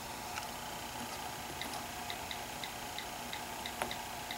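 iPad on-screen keyboard key clicks as a password is typed: a quick run of about eight light ticks, a few per second, starting about a second and a half in.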